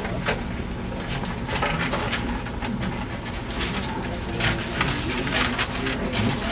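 Classroom room noise: pens scratching and paper rustling in short, irregular strokes as students write, over a faint murmur of voices.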